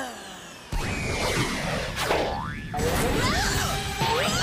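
Cartoon sound effects over a music score: a sudden loud jolt a little under a second in, a whistle-like tone that falls and then rises again around two seconds in, and a run of quick sliding tones near the end.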